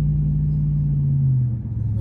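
Car engine and road noise heard from inside the moving car's cabin: a steady low drone that drops in pitch and gets a little quieter about one and a half seconds in.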